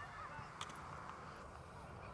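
Faint outdoor field ambience: a low rumble of wind on the microphone, with a few faint distant calls near the start and a faint tick about half a second in.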